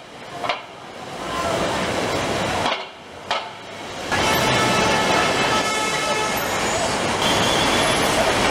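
Busy city street noise of traffic and passing voices. It drops away sharply at the start and again about three seconds in, then runs loud and steady from about four seconds on.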